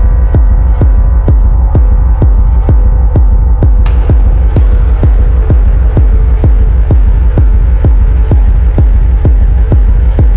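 Dark minimal techno track: a steady kick drum at about two beats a second over a deep, sustained bass hum, with faint held tones above. About four seconds in, a burst of noise opens into a hissing texture that carries on over the beat.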